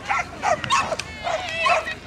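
Dog barking in a rapid string of short, high barks and yips, about four or five a second.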